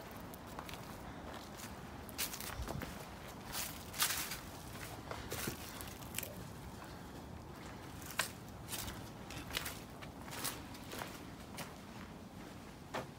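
Footsteps of a person walking slowly over dry leaf litter and a dirt floor, crunching irregularly, about one or two steps a second.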